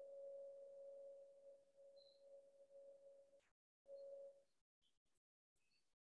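A faint, steady ringing tone that slowly fades, breaks off about three and a half seconds in, then rings again briefly. A few faint high ticks follow near the end.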